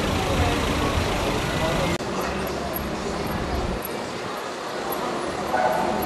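Ford Transit ambulance engine idling with voices around it. About two seconds in it cuts off abruptly to quieter street ambience with distant voices.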